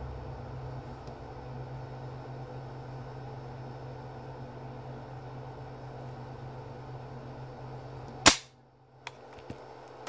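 Steady low room hum, then one loud, sharp metallic click from the semi-automatic pistol's action a little past eight seconds in, followed by a few faint clicks.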